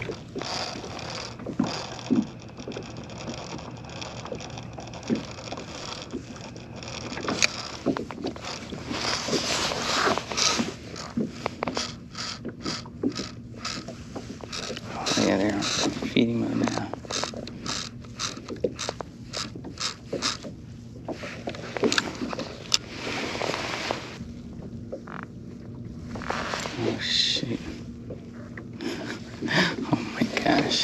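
Spinning fishing reel being cranked, a steady run of mechanical clicks about two or three a second through the middle, over soft handling noise.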